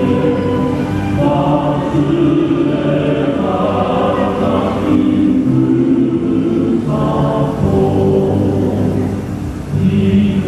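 Music: a choir singing a slow song in long held notes.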